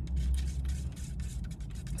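A wooden stir stick scraping and clicking against the inside of a paper cup as sugar is stirred into a drink, with a low steady rumble underneath.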